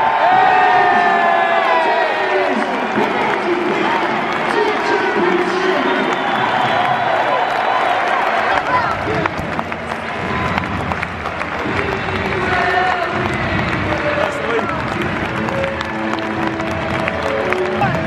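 A large stadium crowd of football supporters cheering, singing and clapping, with music mixed in.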